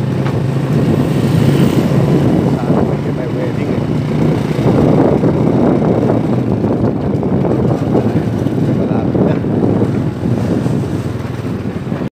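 Wind buffeting the microphone on a moving motorcycle, a steady loud rush with the low hum of the engine underneath.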